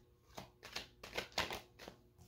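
Tarot cards being handled as one is drawn off the deck: several faint, short flicks and slides of card stock, spread across the two seconds.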